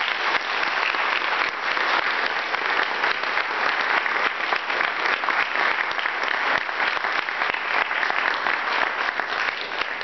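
Audience applauding, a dense steady clapping that begins to die away at the very end.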